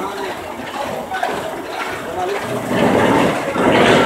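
People's voices talking and calling out in the street. A louder, rougher noise with a low hum builds up over the last second and a half.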